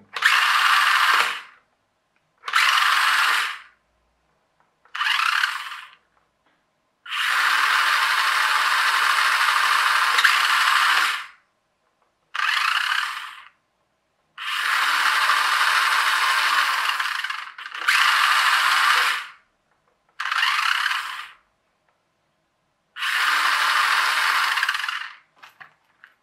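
The small brushed DC motor and plastic gearbox of a toy-grade RC car's rear axle, driven through a cheap 20A brushed ESC, runs in nine bursts of one to four seconds each. Each burst stops quickly once the throttle is let go, with the ESC's brake switched on.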